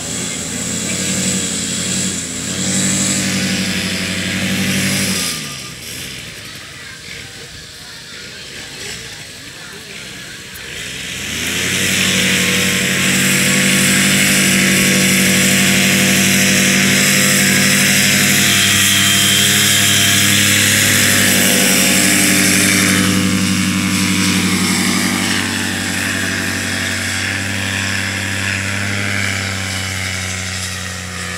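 Paramotor engine and propeller running: throttled back for several seconds, then opened up to full power about a third of the way in and held steady for the takeoff run, easing slightly near the end.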